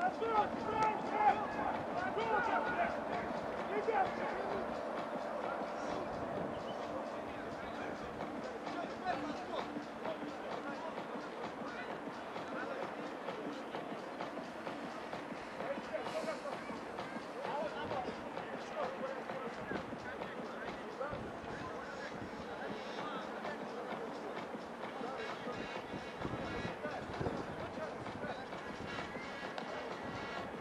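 Indistinct, distant voices of rugby players calling across the pitch over steady outdoor background noise, busiest in the first few seconds.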